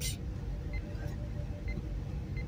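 Room tone: a steady low rumble with a faint hum, and no distinct sound event.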